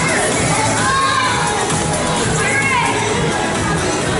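Children shouting and cheering over a steady din of music, with two rise-and-fall whooping shouts, one about a second in and another near the three-second mark.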